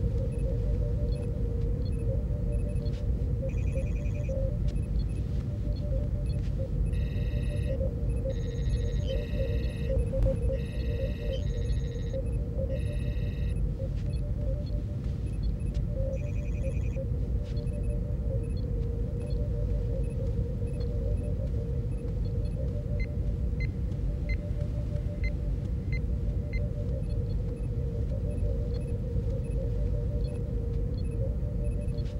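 Sci-fi starship ambience: a steady low engine hum with a constant mid tone, broken by clusters of trilling computer chirps and beeps around 4 seconds in, from about 7 to 13 seconds, and again near 16 seconds.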